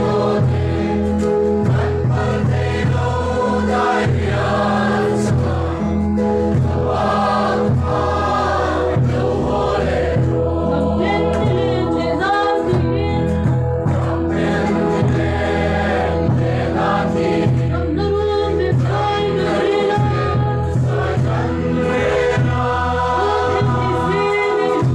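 Many voices singing a Mizo mourning hymn together, loud and continuous, over a steady low accompaniment that moves note by note.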